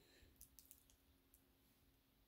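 Near silence: room tone with a faint steady hum and a few faint, short clicks about half a second in and again near the middle.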